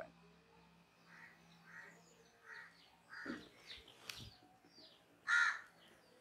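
A crow cawing faintly: a run of short calls about every 0.7 s, then one louder caw about five seconds in. Faint chalk clicks on the blackboard come in between.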